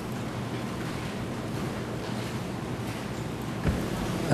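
Steady hiss with a faint low hum from an open courtroom microphone feed during a pause in speech.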